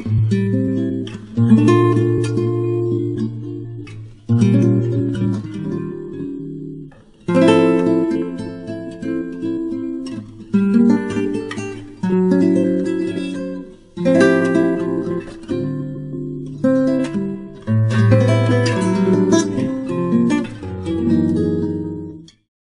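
Background music on acoustic guitar: strummed and picked chords, each one sounding sharply and dying away, repeated every couple of seconds.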